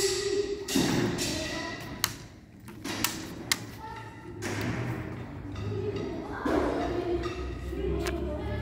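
Several sharp knocks of draughts pieces being set down on a board, in the first four seconds, with voices in the background.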